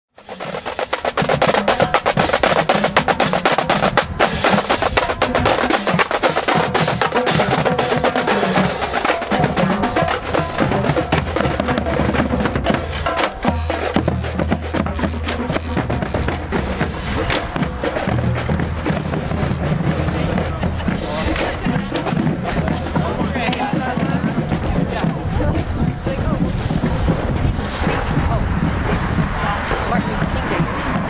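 Marching snare drums of a drumline playing a fast cadence, with dense rapid strokes and rolls, thickest in the first half. Steady low notes run underneath.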